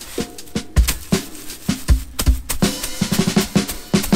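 Background music: a drum-kit beat with kick and snare hits, getting denser in a run of quick hits near the end.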